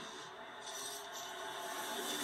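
Soundtrack of a football promo playing on a television, heard through the TV speaker across a room: a steady noisy rush with no clear speech or music, filling out slightly under a second in.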